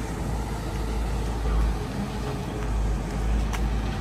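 Outdoor street background noise: a low, uneven rumble with a faint haze over it, and a single sharp click about three and a half seconds in.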